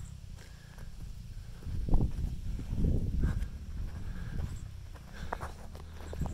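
Footsteps on a gravel dirt trail, with wind rumbling on the microphone and a few louder knocks about two and three seconds in.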